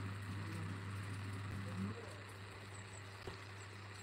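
Quiet outdoor background: a steady low hum with faint far-off voices in the first couple of seconds, and one small tap about three seconds in.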